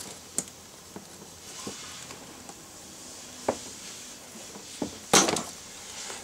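Small plastic clicks and knocks from fingers working the release tab of a door-panel wiring-harness connector, with one louder clack about five seconds in.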